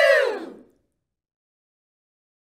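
Several women shouting a drawn-out "woo!" together, the cheer falling in pitch and trailing away under a second in; then the sound cuts to dead silence.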